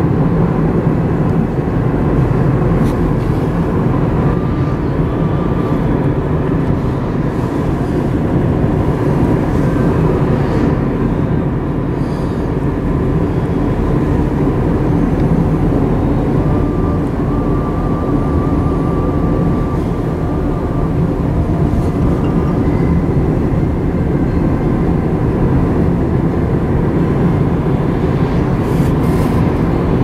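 Steady road noise of a moving car heard from inside the cabin: a deep, even rumble of tyres and engine at cruising speed.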